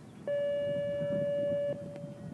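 Show-jumping arena's electronic signal horn sounding one steady, even tone for about a second and a half, cutting off sharply with a short fading tail. This is typical of the judge's signal to a rider in the ring.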